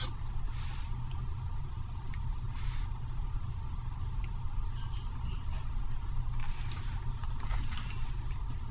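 Steady low background hum with a few faint scattered clicks and two brief soft hisses.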